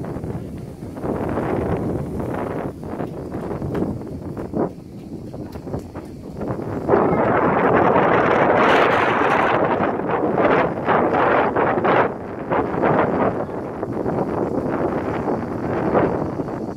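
Wind buffeting a phone's microphone in uneven gusts, loudest about halfway through.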